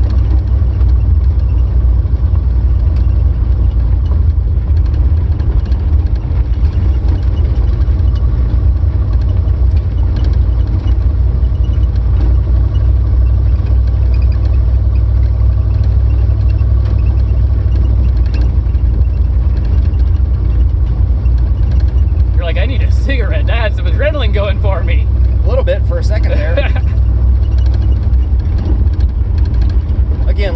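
Steady low rumble of a roofless Lincoln driving on a rough dirt road: engine, tyres and open-air wind noise together, unchanging throughout.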